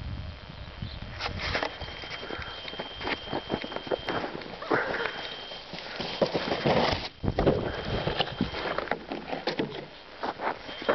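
Plastic sled sliding down a packed snow run, scraping and crunching with a rapid series of knocks that grow as it nears. The heaviest thumps come about seven to eight seconds in, as it hits the snow jump.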